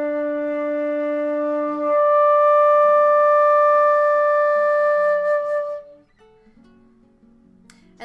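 Concert flute holding a low D, then overblown to the D an octave higher about two seconds in. The fingering stays the same and the note is not tongued between. This is the first harmonic in a harmonics exercise. The upper D is louder and holds steady for about four seconds before stopping.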